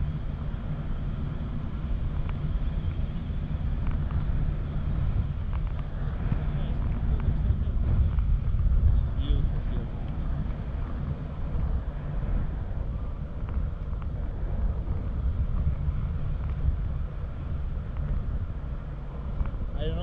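Wind rushing over the camera microphone in flight under a tandem paraglider, a steady low buffeting rumble.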